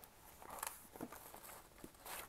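Faint handling sounds of a paper notebook insert being fitted into a soft faux-leather planner cover: a few light rustles and soft taps.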